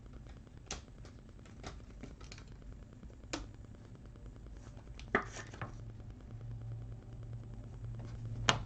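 Trading card and rigid plastic card holder being handled: a few faint light clicks, then a louder short plastic scrape about five seconds in as the card slides into the holder.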